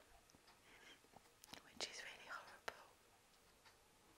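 Near silence: room tone with a few faint clicks and soft breathy sounds of a woman's voice a little over a second in.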